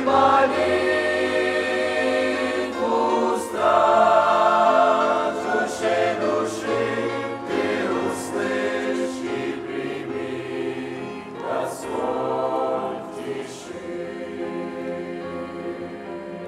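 Mixed youth choir singing a Russian-language hymn in several parts, with sustained chords; the singing grows quieter over the last few seconds as the song draws to a close.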